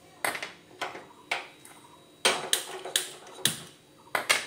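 A series of about six sharp clatters and knocks, the sound of metal kitchenware such as pots, a pan or utensils being handled.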